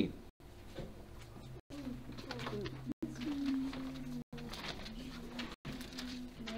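A faint, distant voice, read out slowly with drawn-out syllables, most likely someone across the room reading the Bible verse aloud. The recording cuts out for an instant about every second and a half.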